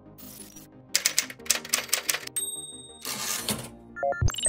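Keyboard-typing sound effect: a fast run of key clicks starting about a second in, followed by a short high tone and a brief rush of noise near the end, over faint background music.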